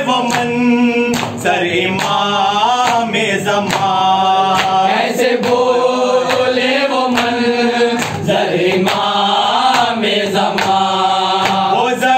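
Group of men chanting a noha in unison behind a lead reciter, with a steady rhythm of open-hand chest slaps (matam) keeping the beat.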